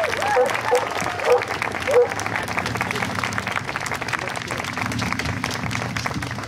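A crowd applauding, a dense, steady clatter of many hands clapping.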